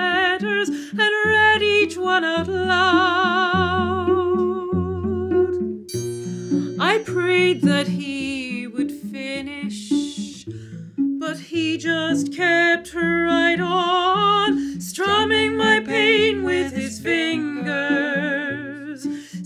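A mezzo-soprano singing a slow ballad with strong vibrato, accompanied by a cello playing low held notes beneath her. Her voice makes one quick upward slide about seven seconds in.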